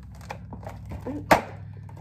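Cardboard advent calendar box being handled and its first door pried open: scattered small taps and scrapes, with one sharp snap a little past halfway.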